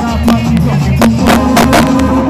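Live Mexican banda brass-band music played loud over a concert sound system, with a low bass line and a steady beat of drum hits.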